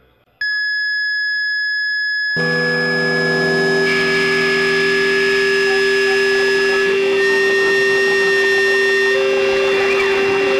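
Experimental noise-drone music: after a short gap, a single loud, steady high-pitched tone starts about half a second in. About two and a half seconds in, a thick, sustained drone with low held notes comes in under it and carries on.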